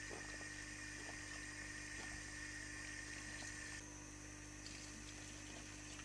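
Faint steady background hum and hiss, with a high steady tone that stops about four seconds in.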